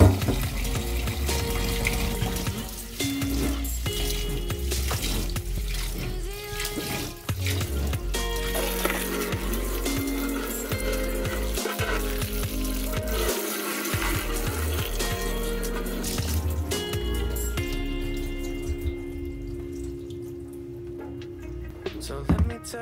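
Tap water running and splashing into a plastic bowl of raw rice as the rice is rinsed and the water is tipped off, dying away near the end. Background music plays over it.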